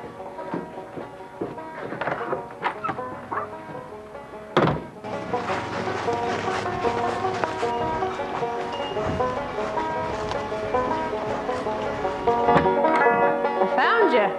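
Banjo picking a bluegrass tune: scattered plucked notes at first, then a steady run of fast picking from about five seconds in. A single sharp thunk about four and a half seconds in.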